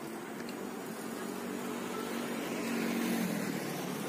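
Electric bike with front and rear hub motors running at speed: a faint steady motor hum under road and wind noise, which grows louder about three seconds in.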